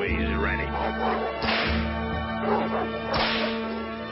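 Two sharp whip cracks in an old cartoon soundtrack, about a second and a half apart, over a steady held musical note.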